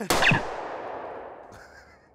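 A single gunshot: a sharp crack just after the start, followed by a long echoing tail that fades over nearly two seconds. A brief pitched cry sounds over its first moments.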